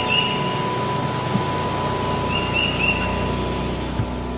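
Steady outdoor ambient hiss with a faint steady whine running under it. Short high chirps come just at the start and again as a run of three about two and a half seconds in.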